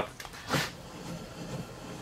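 Wooden workpieces being handled on a workbench: a low rubbing with a brief scrape about half a second in.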